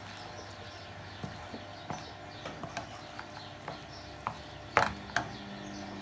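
A wooden spoon stirring spiced scrambled eggs in a frying pan, giving scattered soft scrapes and taps over a low steady background. Near the end come two louder knocks as the pan is lifted off the gas hob's grate.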